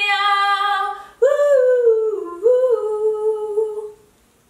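A woman's voice singing wordless held notes: one long steady note, a short break about a second in, then a phrase of long notes that dips down and climbs back up before it stops shortly before the end. There are no instruments under it.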